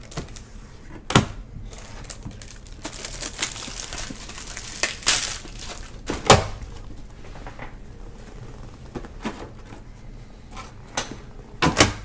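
Handling of trading-card packaging: a few sharp knocks, one about a second in, one around six seconds and a double knock near the end, with a stretch of rustling, tearing packaging between about three and five and a half seconds.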